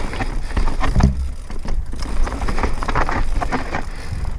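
Mountain bike descending a rocky dirt singletrack: tyres rolling over loose stones, with the bike rattling over bumps and wind buffeting the helmet-camera microphone. A heavy thump comes about a second in.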